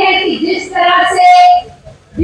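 A woman speaking loudly into a microphone in Hindi, drawing out long vowels in an oratorical delivery; her voice stops shortly before the end.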